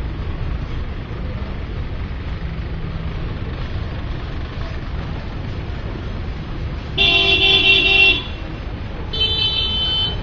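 Steady low street-traffic rumble, with a vehicle horn honking twice: a loud honk lasting about a second about seven seconds in, then a shorter one near the end.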